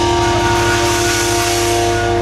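Pop-punk band playing live: a loud distorted chord held steady, ringing through the PA and amplifiers.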